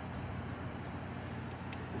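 Steady low hum of outdoor background noise, with no distinct event.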